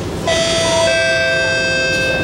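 A two-note descending chime ('ding-dong') from the train's passenger announcement system: a bright higher note, then a lower one about half a second later, both ringing on and fading slowly. It is the chime that comes before the station announcement. Under it runs the steady rumble of the train in motion.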